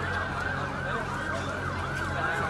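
A siren wailing in quick, repeated rising-and-falling sweeps over crowd noise and a steady low hum.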